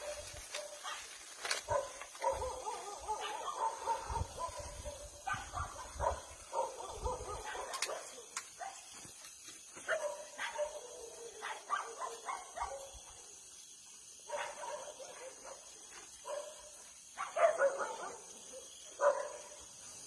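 Dogs barking and whining again and again, with the loudest barks near the end.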